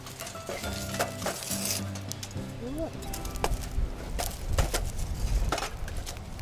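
Background music with scattered sharp clinks and clicks as an iron frying pan is moved about on the grate of a wood-burning fire pit.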